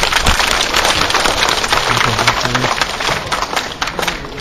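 Crowd applauding: a dense, even patter of many hands clapping.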